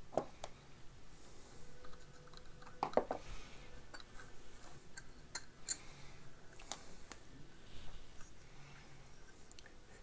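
Light scattered clicks and taps of a screwdriver and small metal parts as a dial indicator bracket is unscrewed and lifted off an old radio chassis, with a slightly louder pair of clicks about three seconds in.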